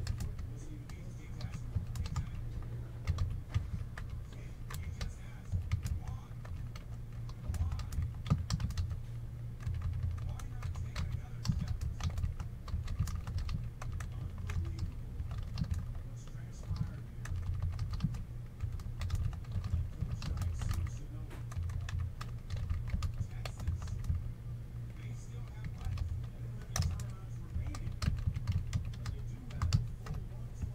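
Typing on a computer keyboard: irregular runs of quick key clicks over a steady low hum.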